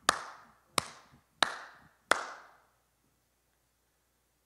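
One person's slow hand claps, four evenly spaced claps about two-thirds of a second apart, each ringing on briefly in a reverberant church hall.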